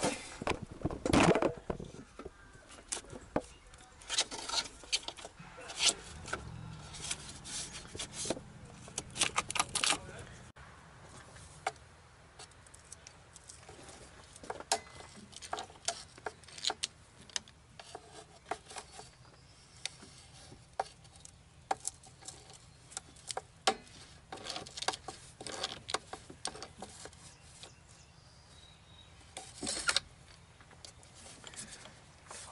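Irregular metallic clicks, taps and knocks as hand tools and parts are worked in a car's engine bay, busiest in the first ten seconds.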